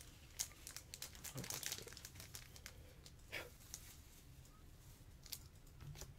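Faint, irregular crinkling of foil card-pack wrappers and plastic as trading cards are handled, busiest in the first couple of seconds.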